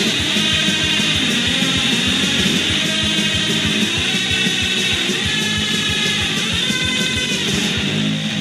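Fast punk rock passage without vocals: distorted electric guitars over a rapid, steady drum beat.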